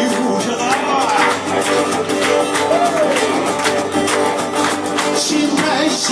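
Electric guitar and strummed acoustic guitar playing a rock song live, with a man singing over them.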